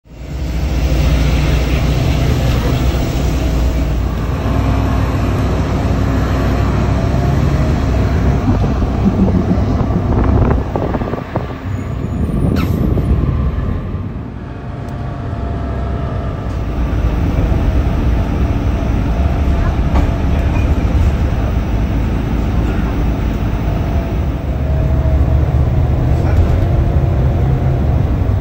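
Steady low engine rumble heard from inside a moving vehicle, with voices in the background.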